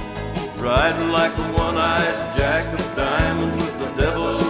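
Instrumental break in a recorded country song: a lead instrument plays repeated sliding, upward-bending notes over the band, with a steady drum beat.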